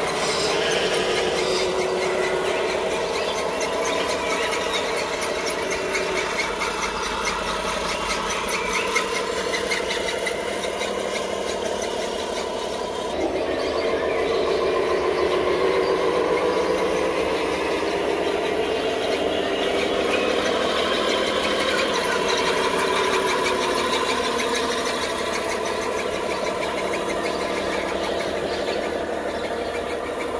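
Whine of a radio-controlled truck's electric motor and plastic gearbox as it drives, a continuous high squealing sound whose pitch wavers up and down with throttle and load, over a fine rapid ticking of the gears.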